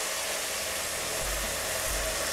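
Kitchen tap running a steady stream of cold water into a pot of chopped vegetables, filling it for a vegetable stock.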